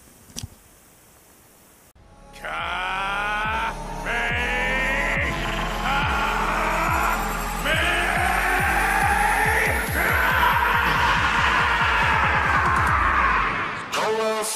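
Anime-style Kamehameha voice clip: a man shouts 'Ka-me-ha-me-ha' in five long, drawn-out syllables, the last held longest. It starts about two seconds in, after a quiet opening, over a rising whine and a fast low pulsing of an energy charge-up effect.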